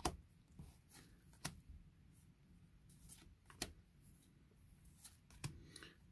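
Magic: The Gathering trading cards being slid one at a time off a hand-held stack: faint card flicks and snaps, four clear ones a second and a half to two seconds apart, with fainter rustles between.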